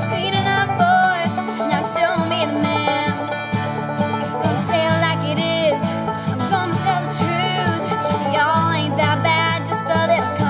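Live band playing a country-rock song: drums, bass and plucked strings under a woman's sung melody.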